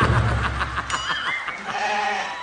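A person laughing in a quick run of short, repeated pulses, fading toward the end.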